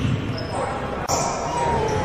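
Basketball game sounds in a gym hall: a basketball bouncing on the hardwood court, with a sharp knock at the start. A thin steady tone comes in about halfway through.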